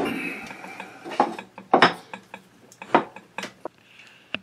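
Singer 127 sewing machine being tipped back and handled: a fading scrape, then several sharp metal knocks and clicks at uneven spacing.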